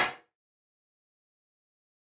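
A sharp crash sound effect that dies away within about a quarter second, then dead silence.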